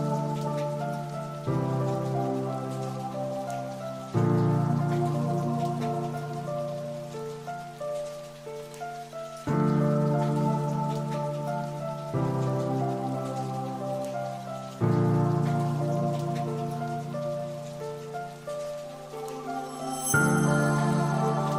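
Background music of slow, sustained keyboard chords, each chord starting suddenly and then fading, with a new one every few seconds, over a faint steady hiss.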